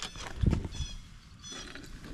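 A bird calling repeatedly, short high calls about every half second, with a low thump about half a second in.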